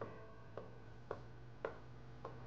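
Chef's knife slicing through imitation crab sticks and knocking on a wooden cutting board: four light, evenly spaced knocks, about two a second.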